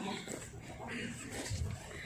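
Faint, indistinct background voices in a terminal, with a low muffled bump about one and a half seconds in.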